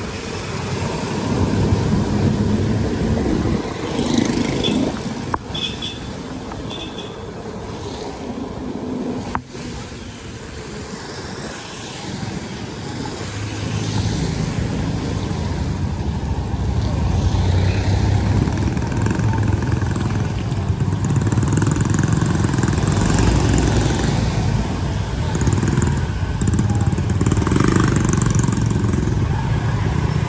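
Motorcycle running along a wet road amid tricycle and car traffic, with steady engine and road noise that gets fuller and deeper about halfway through.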